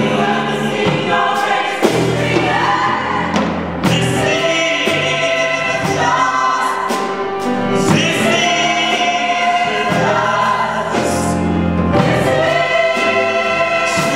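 Gospel choir singing in harmony, in long held phrases that break every few seconds.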